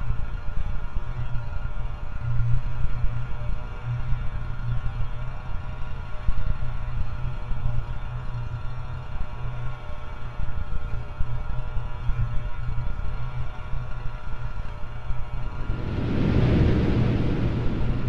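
Dark electronic drone music made from the sound of an electric beard trimmer shaving. It holds a pulsing low hum under layered sustained tones, and near the end a rushing swell of noise rises.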